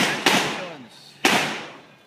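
Three gunshots, each with a long echoing tail: one right at the start, a second about a quarter second later, and a third just past a second in.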